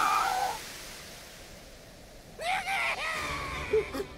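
A man's drawn-out, high scream that breaks off about half a second in. Near the end a second, shorter cry comes in over a low rumble.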